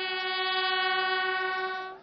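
A solo brass instrument sounding a mournful military-style call: one long held note that stops shortly before the end.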